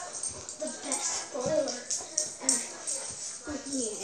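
A golden retriever whimpering in several short rising-and-falling whines, with light high-pitched rustles and clicks.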